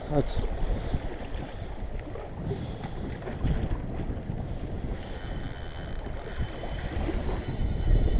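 Wind buffeting the microphone over sea water washing against the rocks: a steady rough rumble.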